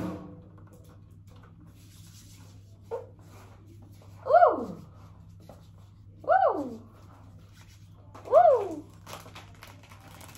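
Premature newborn baby crying: three short cries about two seconds apart, each falling in pitch, over a steady low hum.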